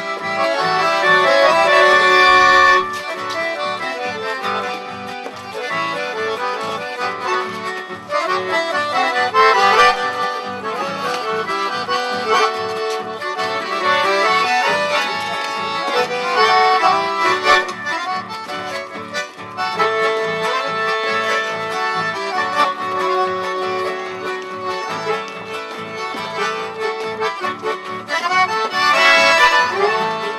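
Instrumental chamamé played live on a piano accordion, with acoustic guitar accompaniment keeping a steady rhythm.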